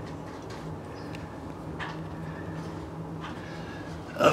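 Steady low hum, with a few faint rustles or clicks about two and three seconds in.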